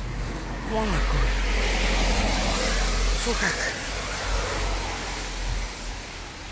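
A car passing on a wet road: tyre hiss on the wet surface swells from about a second in and fades away towards the end, over a low rumble.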